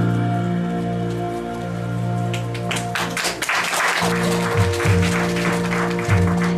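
Electronic keyboard holding sustained chords, then a burst of clapping from the congregation about two and a half seconds in, lasting about two seconds, as the keyboard starts again with a pulsing bass note.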